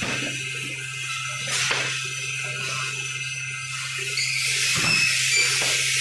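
Folder-gluer carton machine running: a steady low hum under a constant hiss, with a couple of light clicks.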